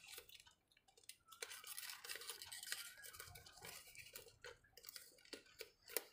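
Faint crinkling and rustling of origami paper being handled as a flap is folded down and tucked in, a run of small irregular crackles starting about a second and a half in.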